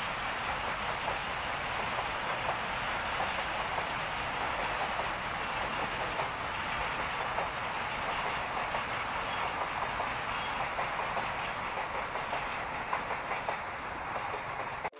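Container freight train's wagons rolling past on the rails, a steady rumble with wheels clicking over the rail joints.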